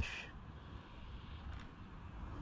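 Faint, steady outdoor background noise: a low rumble with a light hiss and no distinct events.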